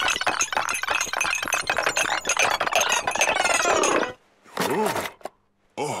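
Rapid, dense clinking and clattering of china cups and glasses that stops suddenly about four seconds in. After a pause come a couple of short vocal 'oh' sounds.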